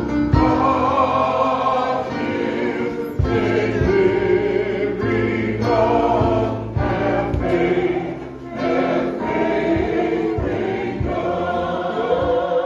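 A choir singing a gospel song with instrumental accompaniment and recurring percussive beats.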